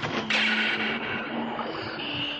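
Film soundtrack sound effect: a sudden rushing noise comes in about a third of a second in and slowly thins out, over low held tones.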